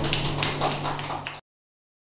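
Scattered clapping from a small audience, a few hands at a time, over a low steady hum; the sound cuts off abruptly about one and a half seconds in.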